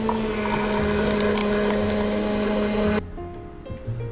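Franke automatic beverage machine running as it pours hot cocoa into a paper cup: a steady pump hum with an even hiss. About three seconds in it cuts off abruptly and light ukulele music takes over.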